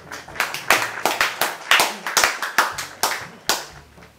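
A few people clapping their hands: a quick, uneven run of sharp claps, louder than the talk around it.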